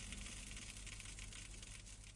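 Faint steady hiss with a low hum underneath, tapering slightly near the end.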